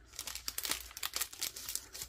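Clear plastic packaging crinkling in the hands as wood veneer pieces are pulled out of it: a run of quick, irregular crackles.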